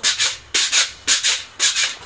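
Pogo stick bouncing on a concrete walk, a short noisy burst with each landing, four bounces at about two a second.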